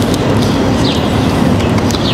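Steady street traffic noise with a low, continuous engine hum.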